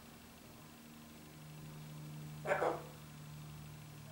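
Blue-fronted amazon parrot giving one short, loud, bark-like call about two and a half seconds in, over a steady low hum.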